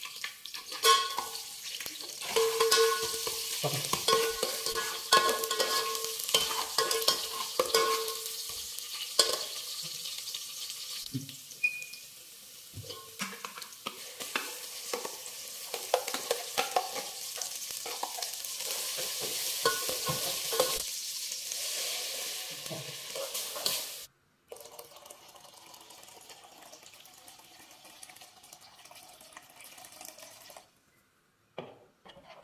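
Food sizzling in hot oil in an aluminium pot while a steel ladle stirs it, clinking and scraping against the pot with short metallic rings. About 24 seconds in, the sizzling stops abruptly and only a faint hiss remains.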